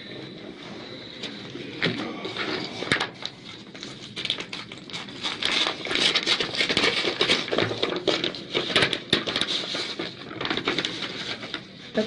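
Rustling and many small clicks of handling noise, busiest from the middle on: a gunshot-residue kit's packaging and gloves being handled while metal handcuffs are worked at with a key.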